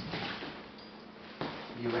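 Low room noise, then a short knock about one and a half seconds in, followed by a man's voice starting to speak.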